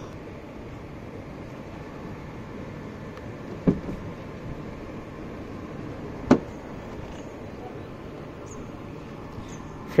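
Steady background hiss with two short clicks, a faint one about four seconds in and a sharper one about six seconds in, the sharper one being the BMW i4's door handle pulled and the latch releasing as the front door is opened.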